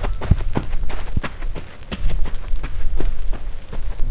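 Running footsteps crunching on loose gravel, sharp and irregular at about three steps a second, over a steady low rumble of wind on the microphone.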